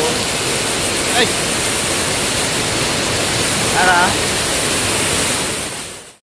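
Heavy rain pouring down, a steady dense hiss that fades out just before the end.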